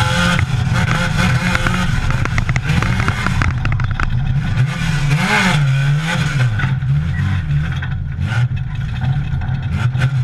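Dirt late model race car's V8 engine, heard from inside the cockpit, running on the track with its revs rising and falling as the throttle is worked through the turns. Chassis rattles and clatter run over the engine note.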